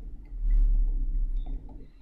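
Low steady hum and rumble of background room noise on a home webcam recording, with a brief soft hiss about half a second in.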